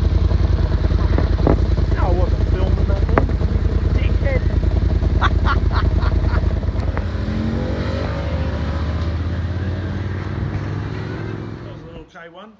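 1974 Kawasaki H1 500cc two-stroke triple running close by, then pulling away with its engine note rising in pitch as it accelerates off, fading out near the end.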